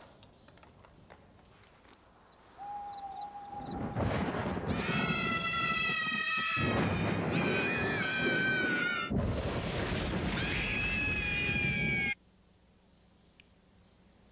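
Two young boys screaming with excitement: long, high-pitched screams in three stretches starting about four seconds in, cutting off suddenly near the end.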